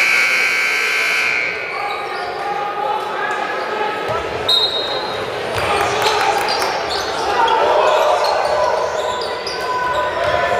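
Basketball game in a gymnasium: a loud, high, steady signal tone sounds for the first second and a half, then crowd voices, the ball bouncing on the hardwood and short squeaks of play fill the rest.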